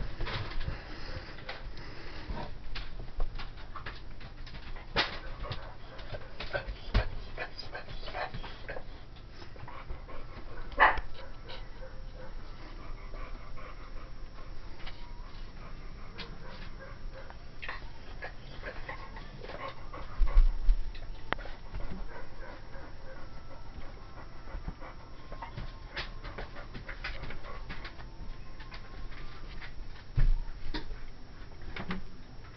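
Pomeranian puppy panting as it plays, with scattered soft knocks and rustles from its paws and a small ball on bedding, and one heavier thump about two-thirds of the way through.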